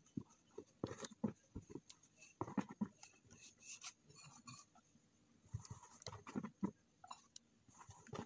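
Faint, irregular taps, knocks and rubbing from hands handling a clear plastic tub of dough.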